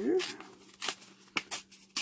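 A book page glued double being torn by hand, in a few short, crackly paper rips.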